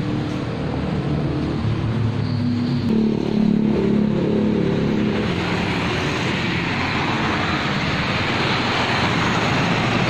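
Road traffic: a motor vehicle engine running, its pitch stepping up about two and three seconds in, then a rising rush of traffic noise as vehicles pass on the road.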